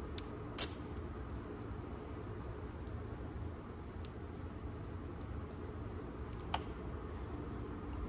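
Steady low background hum with a few light clicks from small plastic parts being handled. The sharpest click comes about half a second in, with fainter ticks later.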